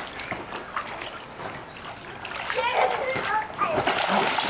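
Water splashing in a shallow inflatable paddling pool as children move about in it, with a child's voice about halfway through.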